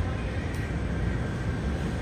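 Steady low rumble and hiss of room noise between speakers, with no voice.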